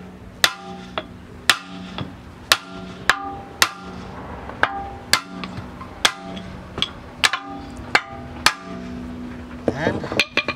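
Hammer blows driving the old bushing out of a Honda Civic rear trailing arm: a steady run of sharp knocks with a short metallic ring, about two a second.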